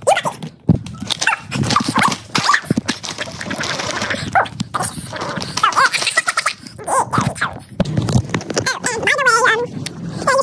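Sped-up, high-pitched voices chattering too fast to make out words, mixed with sharp clicks and knocks.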